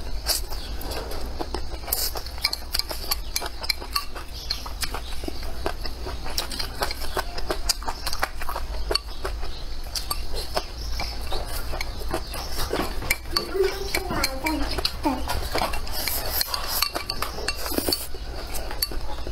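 Eating utensils clicking and clinking against a bowl during a meal: many small, quick, irregular ticks, with a steady low hum underneath.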